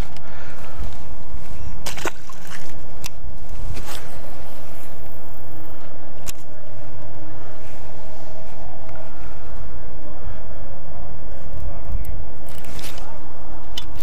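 Steady low rumble with a handful of sharp clicks and knocks scattered through it.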